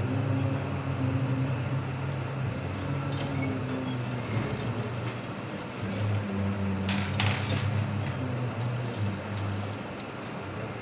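Low male voices chanting Sanskrit mantras in a steady monotone during a Hindu puja, with two quick metallic clinks about seven seconds in.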